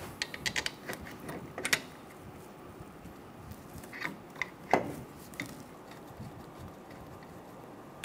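Hand ratchet clicking in short runs as brake caliper bolts are run in: a quick series of clicks in the first second, then a few scattered clicks around four to five seconds in.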